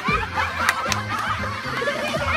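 A group of women laughing, many short high-pitched laughs and cries overlapping at once, with a couple of sharp clicks just under a second in.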